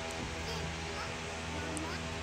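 Faint children's voices at play over a quiet, steady background music bed with held tones.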